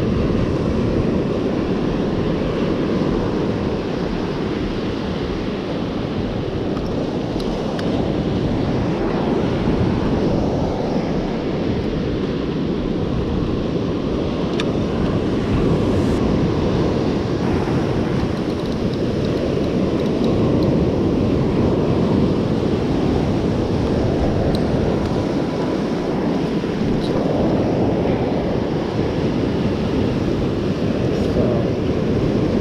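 Ocean surf breaking and washing up a sandy beach, a steady rush of waves, with wind buffeting the microphone.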